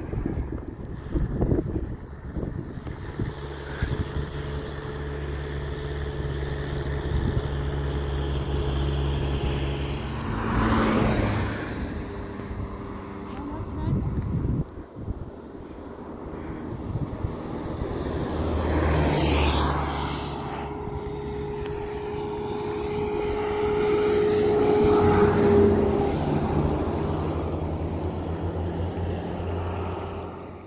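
Motor vehicles passing on the highway, one about ten seconds in and another near twenty seconds, rising and fading as they go by, over a steady low hum and wind on the microphone.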